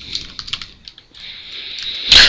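Computer keyboard being typed on: a quick run of key clicks in the first second, then a steady hiss rising near the end.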